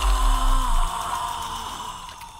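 Cartoon sound effect: a deep boom under a held ringing tone. The boom dies away within the first second, and the tone fades out over about two seconds.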